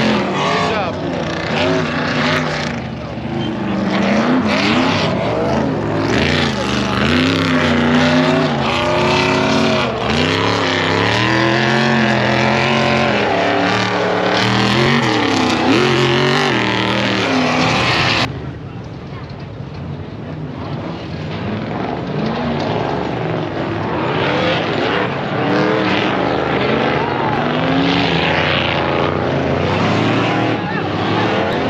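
Off-road race car engines revving hard on a dirt course, their pitch rising and falling with the throttle. About 18 seconds in the sound cuts to a quieter, more distant stretch of engine noise.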